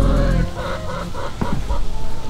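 Background music stops about half a second in, followed by chickens clucking with short, scattered calls.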